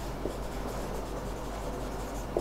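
Marker writing on a whiteboard: faint rubbing strokes of the tip as a word is written.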